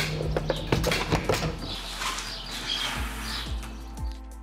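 A quick run of sharp clicks and clatter in the first second and a half, from a MotorGuide trolling motor's kickstand mount being worked, over background music.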